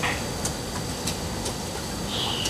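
Steady room hum with a few soft, separate clicks from laptop keys.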